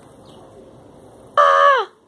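A child's voice giving one short, loud, high-pitched cry about a second and a half in. It holds level for about half a second, then drops in pitch and stops.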